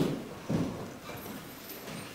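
A man drinking from a cup close to a microphone: two short, low gulping knocks about half a second apart.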